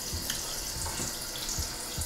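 Water running steadily from a tap into a bathroom sink.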